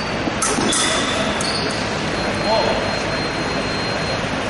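Fencing in a large hall: a few sharp clicks and taps from footwork and blades in the first second and a half, over a steady roomy hum and distant voices.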